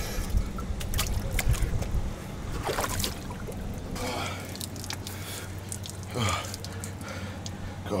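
Cold water splashing and dripping in a plastic barrel as a man plunges into it, with a few gasps and grunts at the cold.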